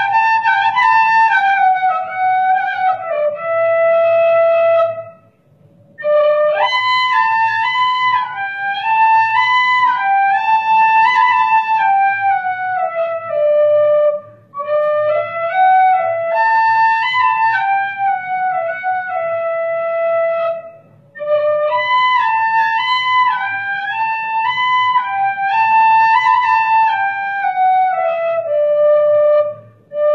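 Solo flute playing a melody through a stage microphone, one melodic line moving up and down in phrases of several seconds, with short breath pauses between phrases.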